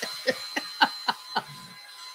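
A person laughing: about six short "ha" pulses, roughly three a second, dying away after a second and a half.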